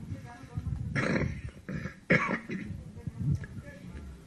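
Two short coughs into a microphone, about one and two seconds in.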